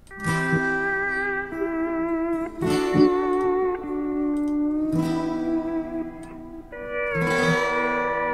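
Instrumental intro of a recorded song played back from an mp3 file: long held guitar notes that glide into one another like a steel or slide guitar, with a new phrase every two to three seconds.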